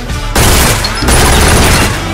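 Two loud stretches of rapid gunfire over music, the first starting about a third of a second in and the second just after a second, with a short break between them.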